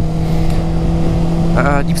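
Honda CBR600RR (PC40) inline-four engine at a steady cruise, its note holding one even pitch, breathing through an aftermarket exhaust that the rider believes is a Shark. Wind rumble on the microphone runs under it.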